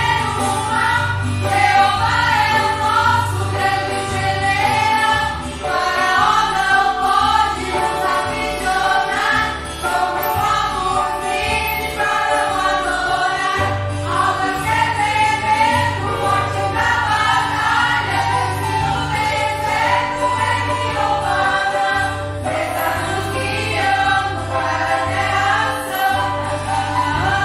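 Small mixed congregation, mostly women's voices, singing a Portuguese-language hymn together in sustained phrases.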